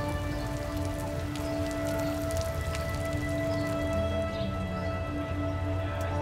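Water falling and splashing in a fountain, a steady patter, under background music with long held notes.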